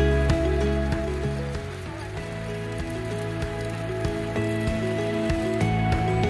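Soft background music of held, sustained notes whose chords change a few times.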